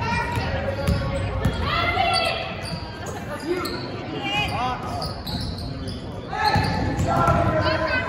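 Basketball play on a hardwood gym court: sneakers squeaking in short chirps and the ball bouncing, among voices of players and onlookers. It gets quieter in the middle and picks up again about six seconds in as play moves up the court.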